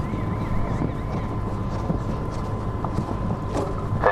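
Wind rumbling on the microphone, with a faint steady high-pitched hum over it.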